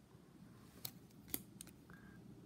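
Faint handling of a hand-held stack of trading cards as one card is slid off and moved behind the next, with a few soft clicks near the middle.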